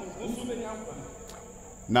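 Faint, indistinct voices in a lull in the preaching, with a thin steady high-pitched tone running throughout.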